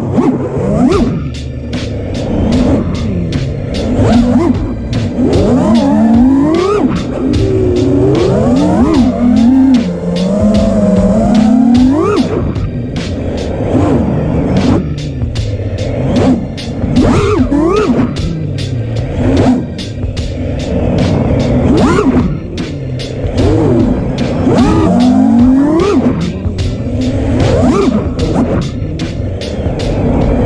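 FPV racing drone's brushless motors whining, the pitch sweeping up and down again and again with throttle, over background music with a steady drum beat.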